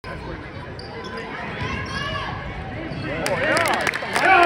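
A basketball bouncing on a hardwood gym court during play, with voices in the gym. Sharp knocks of the ball come in over the last second, as the sound gets louder.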